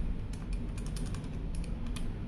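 Buttons of a Casio fx-991ES PLUS scientific calculator being pressed in a quick run of light clicks, about a dozen key presses as a multiplication is entered.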